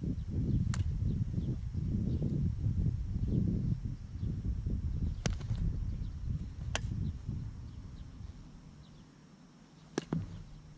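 Sharp knocks of soft lacrosse balls striking sticks and the goal during a shooting warm-up, a few times across the stretch, over a low rumble that is strongest in the first few seconds and fades toward the end.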